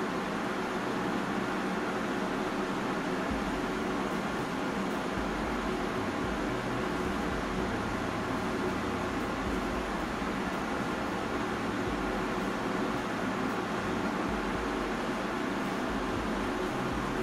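Steady background hiss, an even constant noise with no distinct sounds standing out.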